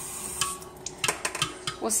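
A metal spoon clinking and scraping against a bowl in irregular strokes as a child stirs, with a kitchen tap running at first.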